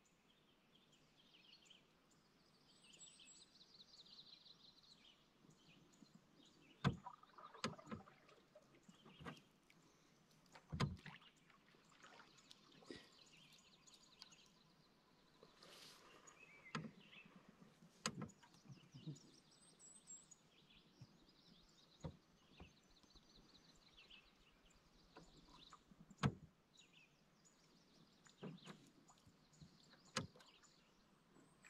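Canoe being paddled across calm water: quiet, with sharp knocks of the paddle against the hull every few seconds and faint bird chirps in the background.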